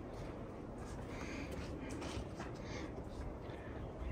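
Faint handling noise from a handheld camera: a low rumble with light, scattered clicks and rustles.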